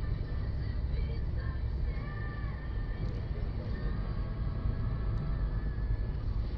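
Steady low rumble of a car driving.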